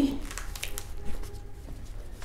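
Soft rustling and handling of a leather-covered budget book as it is opened and its pages are laid flat on a table.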